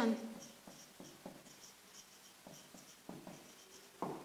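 Marker pen writing on a whiteboard: a string of short, faint strokes as a word is written out.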